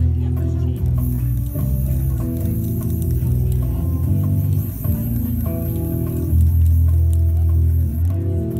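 Live instrumental music: low, sustained notes on an Ibanez Ashula hybrid bass with a cello, the bass line partly looped.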